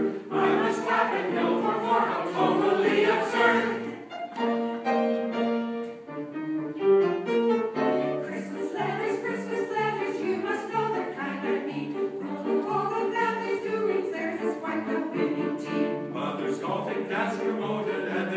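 A small mixed choir of men's and women's voices singing a choral piece, in a thinner, softer passage about four to eight seconds in, then fuller again.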